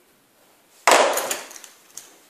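Clarinet parts being handled and set down on a hard table: one sudden loud knock about a second in, a short clatter fading after it, and a small click near the end.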